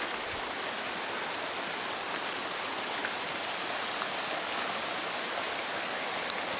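Shallow mountain stream running over rocks: a steady, even rushing of water.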